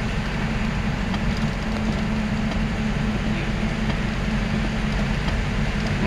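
Steady engine and road drone heard from inside a moving vehicle's cabin, even and unbroken throughout.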